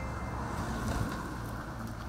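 Steady outdoor noise of a car driving along a country road, with wind.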